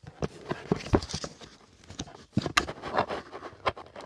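Lottery tickets and a clipboard being handled: a run of irregular clicks, taps and knocks with some paper rustle, as the tickets are clipped back onto the clipboard.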